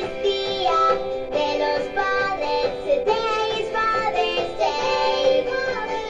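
Children's cartoon song: a child's voice singing over backing music, holding long notes that step from pitch to pitch.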